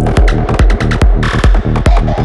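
Psychedelic trance track at about 143 beats a minute: a steady four-on-the-floor kick drum with a rolling synthesizer bassline filling the gaps between kicks. A short burst of noise effect comes in a little after a second in.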